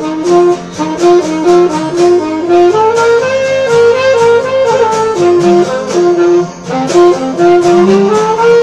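Saxophone playing a melody that steps between sustained notes, over a strummed acoustic guitar keeping a steady rhythm.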